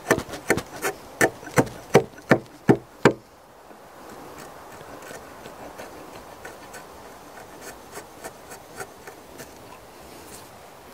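A long-handled timber slick paring wood by hand in a joist pocket cut into a cabin wall log: about nine quick scraping strokes, roughly three a second, then a few seconds of lighter, fainter strokes.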